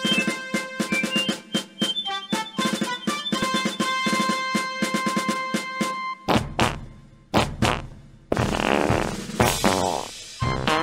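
Comic ringtone music: a quick, staccato melody over a beat. About six seconds in the tune stops and gives way to rough, noisy sound-effect blasts with a low rumble, then a longer noisy stretch near the end.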